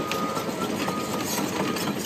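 Compact crawler dozer running steadily as it drives and turns on its tracks over gravel, without sharp knocks or changes.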